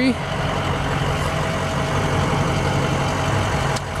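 The 6.0L Power Stroke V8 turbo diesel of a 2006 Ford F-350 idling, heard from inside the cab as a steady low rumble.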